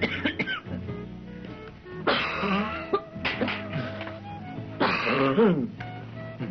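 Adults coughing and clearing their throats in rough fits, about two, three and five seconds in, over background music with long held notes. The coughing is staged as a smoker's cough.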